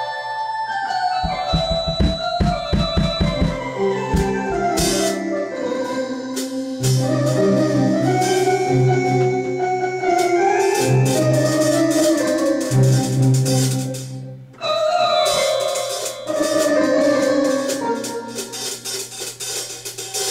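Live band music: an electric keyboard playing held organ-like chords and runs over a low bass line and drum kit. The sound drops out briefly about three quarters of the way through, then picks up again.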